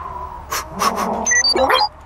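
Cartoon robot dog's electronic sounds: a short growly bleep, then a quick run of high beeps jumping between pitches near the end.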